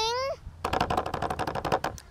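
A rapid drumroll, about fifteen quick even strokes a second, running for a little over a second and stopping just before the show's name is announced.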